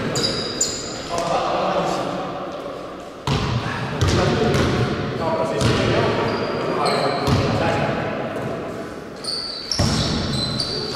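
Basketball bouncing and thudding on a gymnasium court floor during play, with short high-pitched squeaks now and then, all echoing in the large hall.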